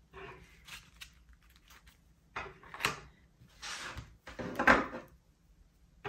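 Diamond-painting coasters and a wire coaster stand being handled on a wooden table: a few scattered rustles and light clacks, the sharpest about three seconds in and just before the five-second mark.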